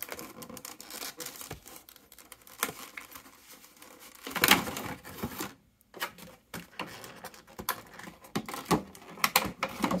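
Clear plastic blister-tray packaging of a trading-card box crackling and clicking as it is handled and pulled apart, in irregular bursts, with a louder crackle a little before the middle.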